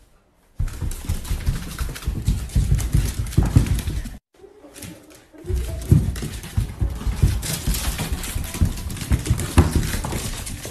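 Corgi growling and grunting in play at a TV remote held out to it, the noise heaviest and deepest at its loudest. There are two stretches, with a brief break about four seconds in.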